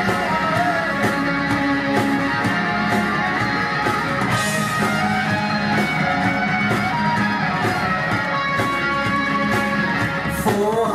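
Live rock band playing an instrumental passage without vocals: electric guitars over a steady drum beat.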